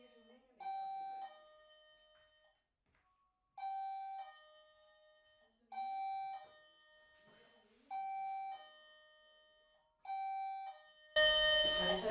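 An electronic doorbell-style chime playing a two-note ding-dong, high note then low, five times at about two-second intervals. Near the end a much louder sound breaks in.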